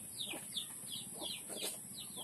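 Bird calls in the background: a quick series of short, high, falling peeps, about four a second.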